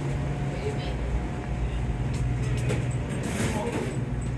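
Steady low hum of commercial kitchen equipment, with a few faint clicks and clatters in the second half.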